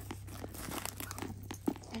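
A hand rummaging among pouches and items inside a tote bag, rustling with many light clicks as a beaded pouch with a metal charm is pulled out; one sharper click near the end.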